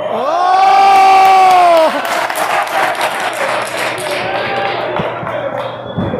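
A loud voice shout held for nearly two seconds, then a lucha libre crowd cheering and shouting.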